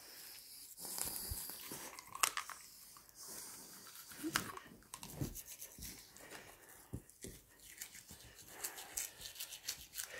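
Faint scratchy brushing of a toothbrush's bristles on a dog's teeth, with scattered small clicks and a few brief sounds from the dog.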